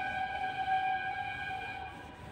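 A whiteboard duster squeaking in one long, steady, high-pitched squeal as it is wiped across the board.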